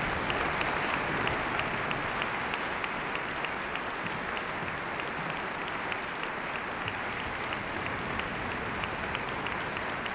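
Audience applauding in a concert hall, a dense, even clapping that is strongest in the first couple of seconds and then eases slightly.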